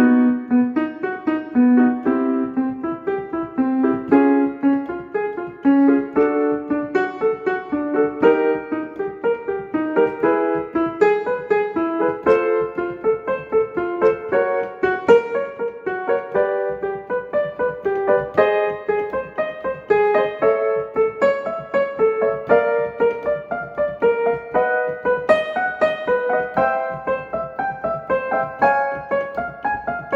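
Piano playing the accompaniment to a staccato vocal warm-up: a short pattern of quick notes repeated over and over, each repeat starting a little higher, climbing steadily toward the upper range.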